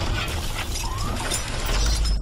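Cinematic sound effects for a logo reveal: dense mechanical clicking and ratcheting over a heavy low rumble that swells near the end.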